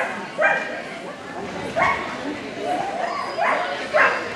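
A dog barking excitedly in a series of short, sharp barks, about five in four seconds and unevenly spaced, over a background murmur of people talking.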